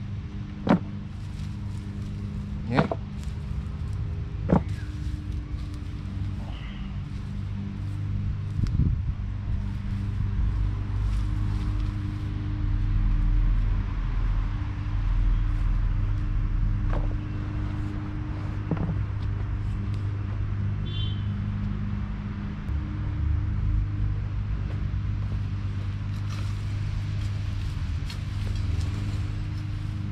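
A steady low droning hum, like a running motor, with three sharp knocks in the first five seconds.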